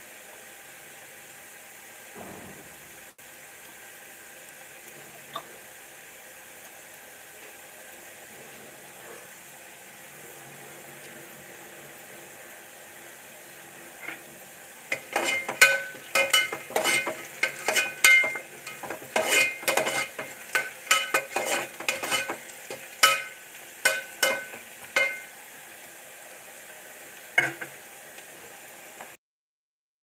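A steady background hiss, then, about fifteen seconds in, a quick run of ringing metallic clinks for about ten seconds, like a metal utensil striking and scraping a metal vessel.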